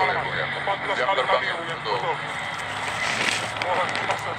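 A man's voice talking over a steady background din of a crowd, with a short burst of noise about three seconds in.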